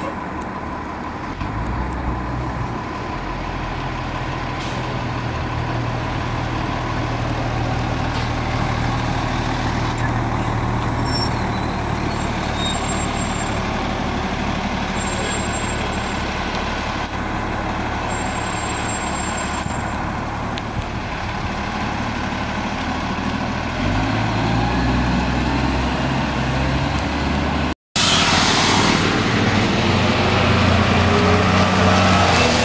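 New Flyer diesel transit bus engine running steadily, then revving up with a rising pitch as the bus pulls away. After a sudden cut near the end, another bus drives past louder.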